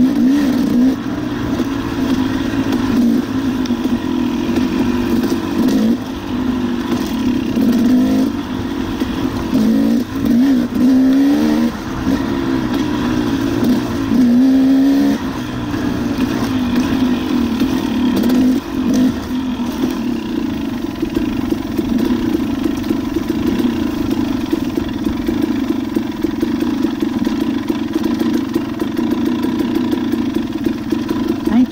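Off-road motorcycle engine running, its pitch rising and falling with the throttle through the first half, then holding steadier for the second half.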